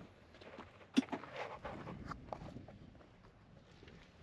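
Faint footsteps and shuffling on a dirt track, with one sharp click about a second in.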